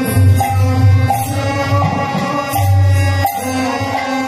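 Odia naam sankirtan music: harmonium, mridanga drum and kartal hand cymbals playing together, with the cymbals striking a steady beat, and chanting.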